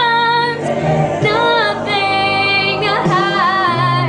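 A woman singing a slow ballad solo, with long held notes and vibrato, over a karaoke backing track.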